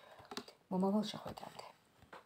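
A woman's voice saying a short phrase, preceded by a few light clicks from her hands at the card deck on the table.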